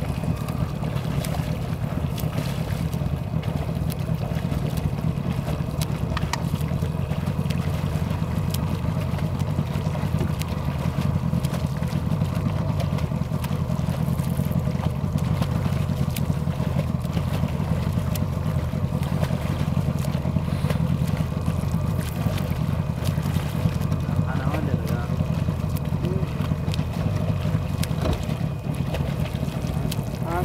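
Motor of a boat running steadily, a constant low hum that does not change.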